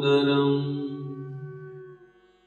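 A man's voice chanting a Sanskrit prayer verse, holding the final syllable on one steady pitch as it slowly fades out and stops near the end.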